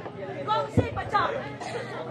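Indistinct background chatter of people's voices, with one low thump just under a second in.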